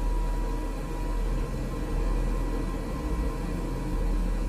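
A steady low rumbling drone under a hiss, with a thin, steady high tone running through it.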